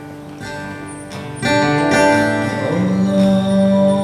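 Live acoustic guitar being strummed, the strumming growing louder about a second and a half in. A man's singing voice enters near the middle and holds one long note over the guitar.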